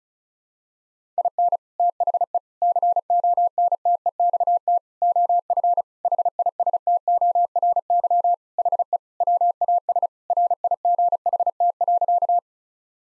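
Morse code sent at 35 words per minute as a single steady beep tone keyed in rapid dits and dahs, starting about a second in. It spells out the practice sentence "In the context of history he was right."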